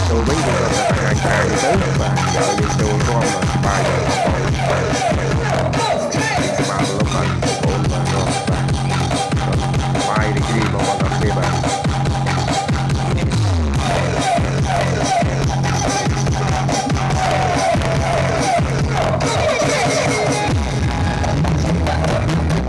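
Loud electronic dance music playing over an outdoor sound system, with a heavy repeating bass line. About two-thirds of the way through, the bass slides down in pitch.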